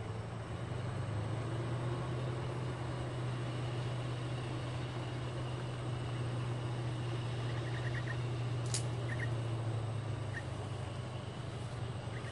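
Low, steady drone of a boat's diesel engine on the river, easing off near the end. A few faint chirps and one sharp click come over it toward the end.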